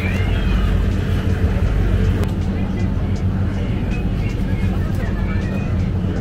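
Store ambience: a steady low hum under faint background music and distant voices.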